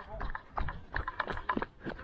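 Quick running footsteps of a cricket batsman sprinting a single along an artificial turf pitch, about three or four footfalls a second.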